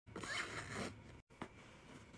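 Plastic markers and a black nylon fabric caddy being handled: a rustling, sliding scrape lasting about a second, then a brief break and a small click.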